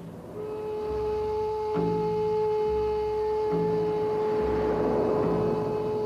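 Background music: a long held high note over low notes that change about every two seconds, with the high note stepping up near the end.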